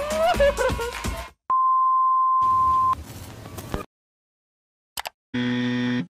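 Electronic beep: one steady, high, pure tone held for about a second and a half, cut in sharply after music stops about a second in. Near the end come two quick clicks and then a short buzzy electronic tone.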